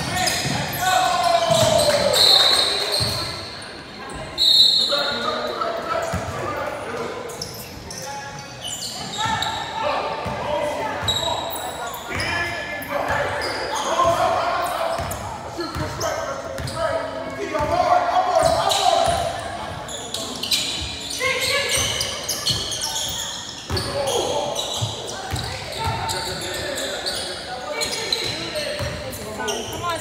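A basketball dribbling and bouncing on a hardwood gym floor during a game, with voices of players and spectators throughout, echoing in a large hall. A few brief high squeaks come about two and four seconds in.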